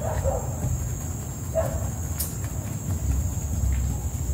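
Electric disc sander (lixadeira) running against a wooden boat hull: a steady motor drone with a high whine. Two brief animal yelps, about a third of a second in and about a second and a half in, and one sharp click just after two seconds.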